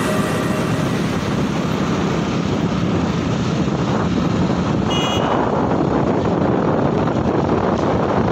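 Motorcycle riding along a paved road, heard from the bike, with wind rushing over the microphone in a steady roar. A brief high beep comes about five seconds in.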